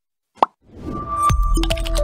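Outro jingle: a single short pop-like blip about half a second in, then music swelling in with regular drum hits and a stepping melody.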